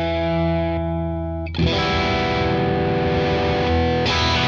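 Suhr Classic S Strat-style electric guitar played through a Wampler Pantheon Deluxe overdrive pedal on channel 1, with an overdriven tone. One chord rings and slowly fades, then a new chord is struck about one and a half seconds in and held.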